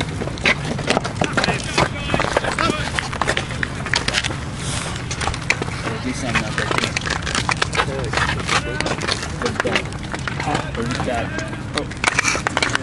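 Indistinct voices of players and spectators at a baseball field, with many short clicks and knocks scattered throughout over a steady low background noise.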